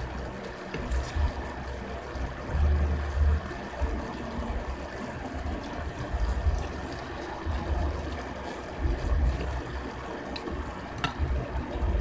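Eating ramen noodles close to the microphone: wet slurping and chewing, with dull low bumps every second or two and a few faint clicks of a fork and spoon against the bowl.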